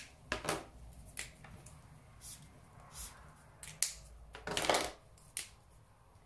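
Felt-tip highlighter pens handled on a paper sheet: a few short clicks and taps, and one highlighter stroke across the paper lasting about half a second, about three-quarters of the way through.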